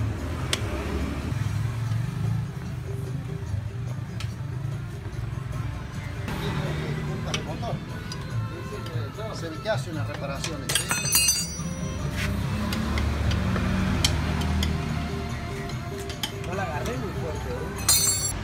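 Metal tools clinking against the scooter's wheel parts as a mechanic unbolts its rear wheel, with a sharp burst of clinks about eleven seconds in and another near the end. Background music and indistinct voices run underneath.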